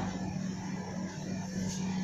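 A pause with no speech: a faint steady low hum under light background hiss.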